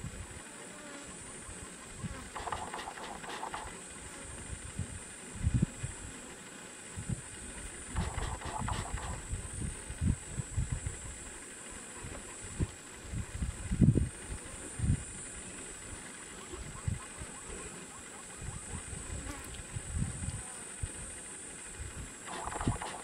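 Steady high-pitched insect drone, with irregular low rumbles and bumps, the strongest about two-thirds of the way through.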